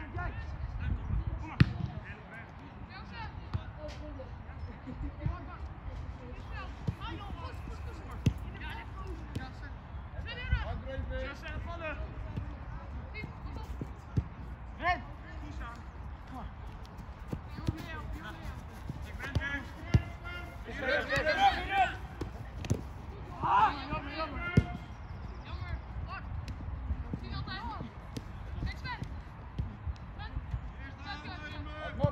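Football being kicked on an artificial-turf pitch, a sharp thud every few seconds, with players shouting to each other during play. The loudest shouts come about two-thirds of the way through.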